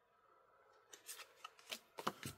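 Faint paper-card sounds as a small hand of old card-game cards is fanned and slid apart: near silence at first, then about five short, soft scratching flicks in the second half.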